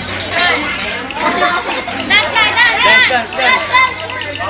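Several people's voices chattering over each other, with a steady low hum underneath.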